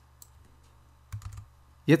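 A few faint clicks of a computer keyboard, with a slightly louder one just after a second in.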